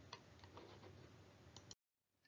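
Near silence: faint room hiss with a couple of faint clicks early on, cutting to dead silence near the end.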